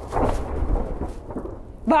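Spaceship sound effect: a low, heavy rumble that sets in suddenly and fades over about a second and a half, the ship lurching to an emergency stop.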